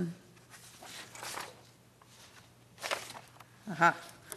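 Sheets of paper rustling and being turned as a stack of documents is leafed through, over a faint steady low hum. A short voiced "ha" comes near the end.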